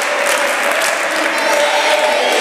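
A group of about two dozen people clapping their hands, steady, dense applause without a break.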